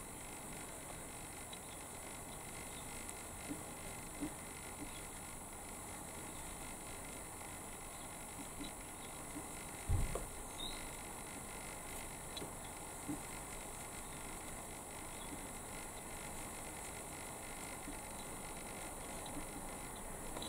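Quiet room tone with faint, scattered small ticks and rustles of a crochet hook working yarn. One low, dull thump comes about ten seconds in.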